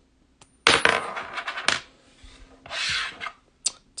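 A coin is flipped and lands on a hard tabletop about half a second in, bouncing and rattling for about a second before it settles. A short scrape follows near three seconds, and a sharp click comes near the end.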